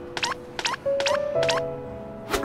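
Cartoon background music: a quick run of short, sharp percussive notes, several a second, over a few held tones.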